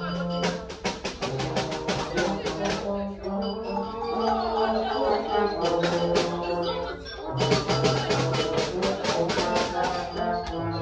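Music with a bass line and sustained pitched notes, driven by quick, even percussion ticks that drop out for a few seconds around the middle and come back near the end.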